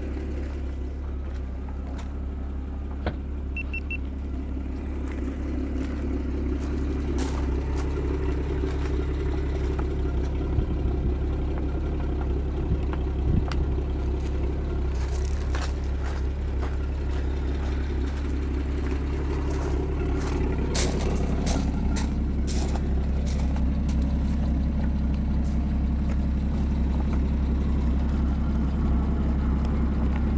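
Porsche 981 Spyder's 3.8-litre flat-six idling steadily. Scattered sharp clicks and knocks, most of them between about 15 and 23 seconds in, come from the fabric roof and its frame being folded by hand.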